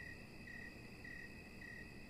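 Faint background chirping of crickets: a steady high trill that pulses about twice a second.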